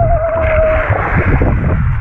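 Underwater rush of water and bubbles against the camera housing, with a single wavering high tone that holds through the first half and then stops.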